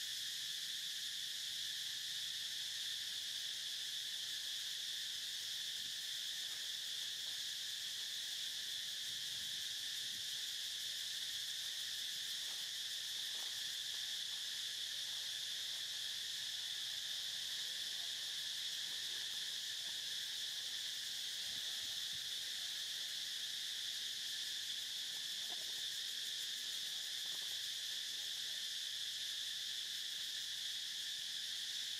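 Steady, high-pitched chorus of insects, unchanging in level.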